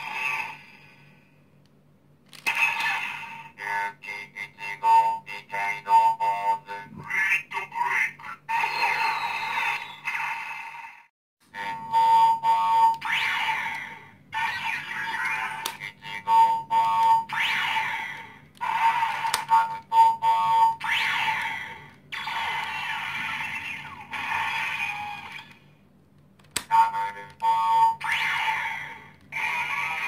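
Toy Kamen Rider Fourze Driver belt playing one electronic sound effect and short music clip after another from its speaker as its switches are pressed, with brief pauses between them.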